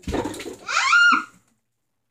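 A burst of rustling and handling noise as bodies shift under blankets, then a child's short high-pitched squeal that rises and falls, about a second in.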